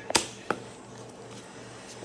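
Two short sharp knocks of handling close to the microphone, the first louder, about a third of a second apart, then only a faint steady hum.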